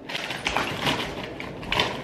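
A clear plastic toiletry pouch rustling and crinkling as it is handled and packed, with a few light clicks and knocks of items against it and the counter.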